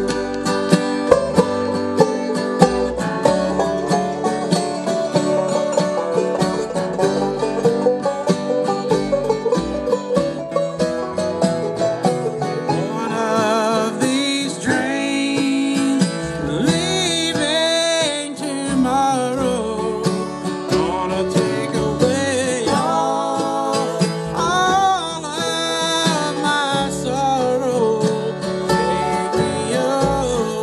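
Acoustic bluegrass band playing live, a fast picked mandolin break over guitar and upright bass for about the first twelve seconds, then singing comes in over the band.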